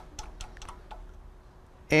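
Light metallic clicks and taps of a hand tool fitting the 12mm-to-8mm adapter onto the camshaft end of a BMW N63 cylinder head: several quick ticks in the first second, then only faint handling.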